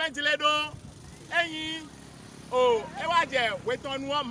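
A man speaking in Fon, with a motorcycle engine passing in the background.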